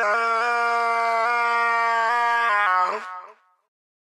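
A single long held note that shifts up and down in pitch in small steps, ending about three seconds in.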